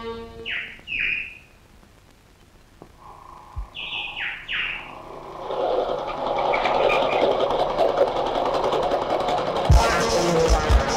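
Film background score: a few short falling-pitch calls, two and then three, before dense music swells in from about halfway and carries on, with low thumps near the end.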